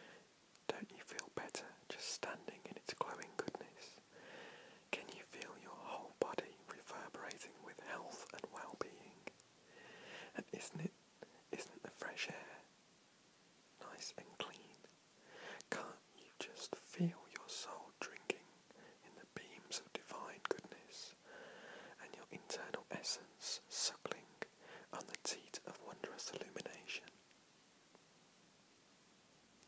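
A man whispering, reading aloud in short phrases with brief pauses and crisp clicks and hisses between words.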